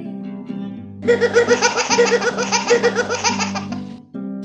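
A baby laughing: a long run of quick, rhythmic giggles starting about a second in, given as the example of a long sound. Acoustic guitar strumming goes on underneath.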